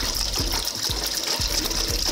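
Water poured steadily from a plastic jug splashing into a shallow pool in a glass tank.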